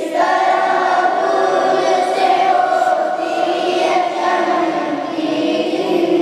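Wordless choir-like vocal backing in a devotional Urdu salaam: layered voices hold long, steady notes.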